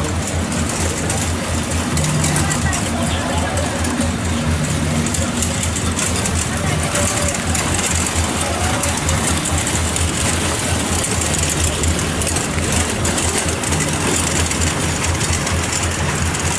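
Street noise: a vehicle engine running with a steady low rumble, with voices mixed in.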